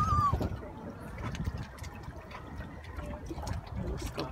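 Water lapping and trickling among breakwater rocks, a low steady wash, opened by a brief high falling squeak right at the start.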